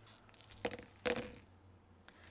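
Small metal dice thrown onto a paper sheet on a table, landing with a few light clicks and two knocks about half a second and a second in.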